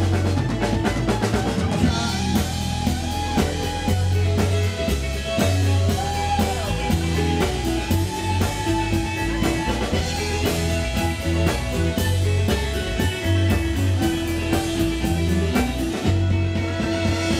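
Live band playing an instrumental passage with no singing: upright bass, guitars, mandolin and fiddle over a drum kit keeping a steady beat, with a few sliding melody notes.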